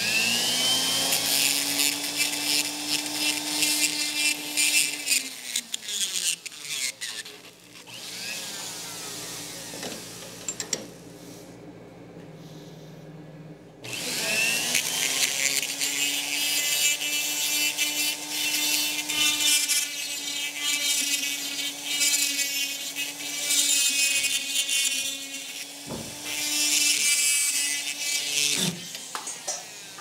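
Small pencil-type die grinder spinning up and grinding on a steel plate: a steady whine under harsh metal-on-metal grinding. It winds down about six seconds in, starts again after a quieter stretch at around fourteen seconds, and winds down again near the end.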